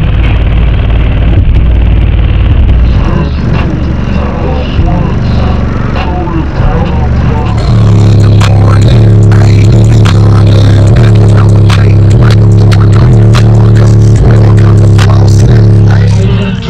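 Bass-heavy music played very loud through a car audio system's two 15-inch subwoofers: a deep sustained bass note for the first few seconds, then from about eight seconds a steady pounding bass line with a drumbeat.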